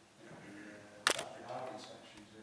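A sharp double click about a second in, over faint speech.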